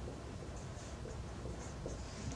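Marker pen writing on paper: faint, short scratching strokes as an equation is written out by hand, over a low steady room hum.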